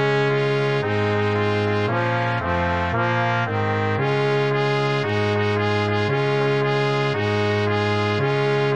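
Brass quartet of two B♭ trumpets, trombone and tuba playing a swung Moderato in D-flat major. The trumpets carry the tune over trombone and tuba holding longer notes, with the bass changing note about once a second.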